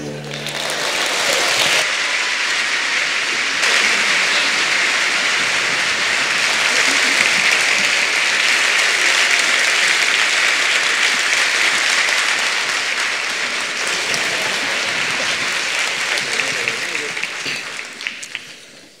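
Audience applause: dense, steady clapping that begins as the orchestra's last chord stops and tails off near the end.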